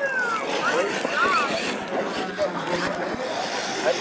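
Spectators chattering, with a radio-controlled monster truck driving across loose gravel.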